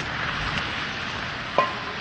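Steady outdoor street noise, an even hiss picked up by a phone microphone, with a short exclaimed "oh" near the end.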